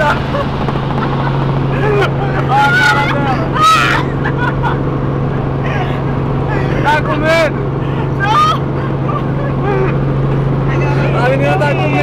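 Helicopter cabin noise in flight: a loud, steady low drone from the engine and rotor, with passengers laughing and exclaiming over it in several short bursts.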